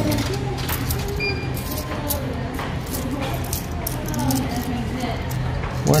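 Coins being fed into a drink vending machine and handled in the palm: a scatter of small clicks and clinks.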